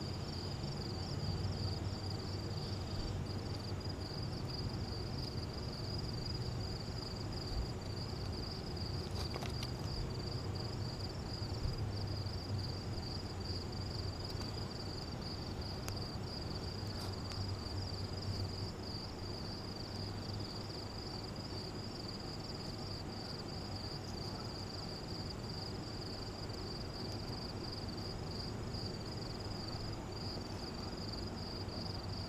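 Crickets chirping steadily in an even, fast pulse, over a low rumble, with a few faint crackles from a small wood fire.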